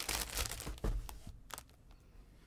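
Crinkling plastic wrap around a bundle of bagged diamond-painting drills as it is handled and laid down, with a soft thump just under a second in, then a few light ticks.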